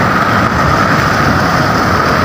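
Floodwater pouring over a concrete anicut (check-dam weir) in spate: loud, steady rushing water.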